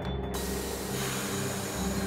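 Steam locomotive letting off steam: a steady hiss that starts about a third of a second in, over soft background music.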